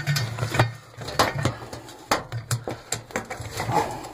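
Rubber door seal (boot) of a front-loading washing machine being pulled off the front panel's lip by hand: irregular rubbing with scattered sharp clicks and snaps as the rubber comes free.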